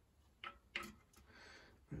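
A few faint clicks in the first second as the non-drive-side end cap is pushed by hand onto the axle of a Hope RS1 rear hub.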